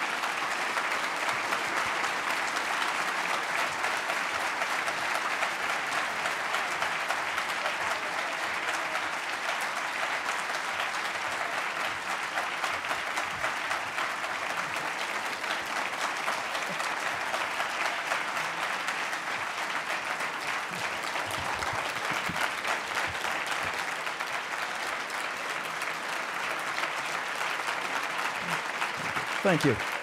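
Large audience applauding steadily, a dense even clapping that holds at one level, with a man's voice saying "thank you" near the end.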